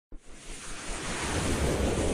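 Intro sound effect for an animated logo: a brief click, then a rushing noise swell that builds steadily in loudness.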